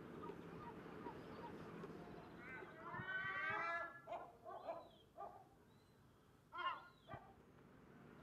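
An animal calling: a loud run of rising and falling calls about three seconds in, then a few shorter calls, with a last one near the end, over a steady low background hum.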